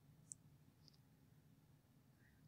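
Near silence, broken by one short, faint high-pitched click about a third of a second in and a fainter tick just before the one-second mark.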